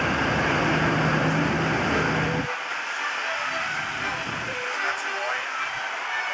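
A pickup truck towing a horse trailer drives past, its engine and tyre noise dropping away abruptly about two and a half seconds in, leaving quieter street sounds.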